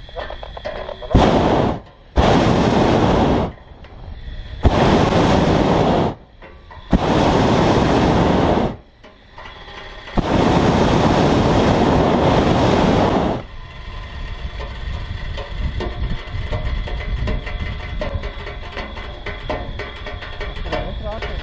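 Hot-air balloon's propane burner firing in five blasts, each one to three seconds long with short gaps between. The last blast is the longest.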